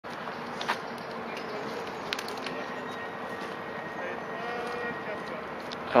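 Outdoor park ambience: a steady background hum of distant traffic with faint far-off voices and a couple of small clicks. A man's voice starts speaking close to the microphone at the very end.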